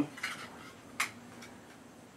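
Light clicks of 1911 pistol magazines being handled: a small one near the start and a sharper one about a second in.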